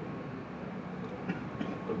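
Low, steady background noise of a crowded press room, with faint voices murmuring in the background.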